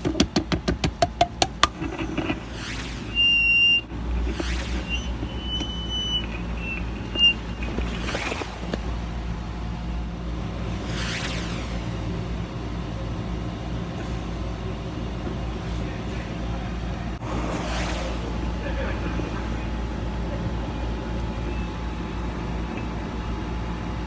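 Close-up sound of a small microphone held in the mouth and then pushed into the ear canal. It opens with a quick run of clicks from the mouth and jaw, about six a second, then brief high tones, then a steady low rumble with occasional soft whooshes.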